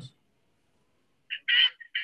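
Near silence, then about a second and a quarter in, a few short, thin, high-pitched fragments of a voice breaking up over a video-call connection.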